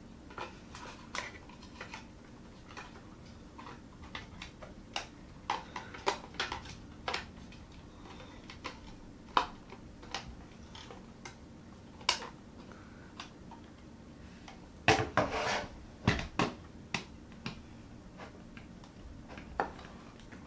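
Scattered sharp clicks and light knocks of a 2011 Mac Mini's aluminium case and internal parts being handled and pressed together during reassembly, with a denser run of clicks about three quarters of the way through. A part is being worked into place that does not yet seat quite right.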